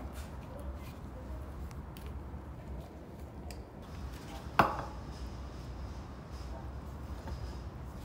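Low steady room hum with faint light clicks and rustles, and one sharp knock a little past halfway through.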